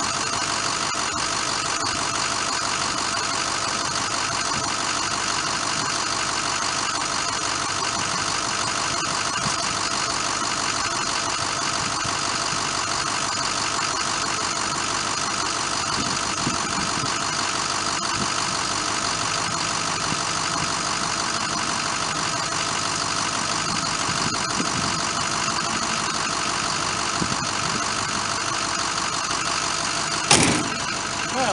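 An engine or motor running steadily at an even idle, with no change in speed.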